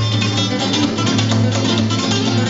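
Two acoustic guitars, one a nylon-string classical guitar, playing flamenco-style music together: quick strummed and picked chords over a steady low note.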